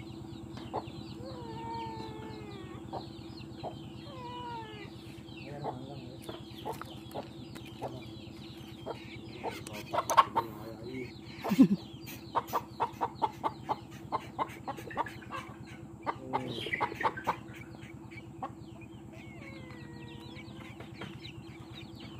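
Chickens clucking, with short falling calls in the first few seconds and a quick run of sharp clucks, about three a second, a little past halfway, over a steady low hum.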